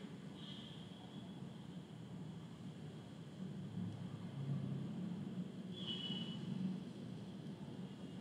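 Quiet room tone: a faint, steady low hum and hiss, with a brief faint high tone near the start and another about six seconds in.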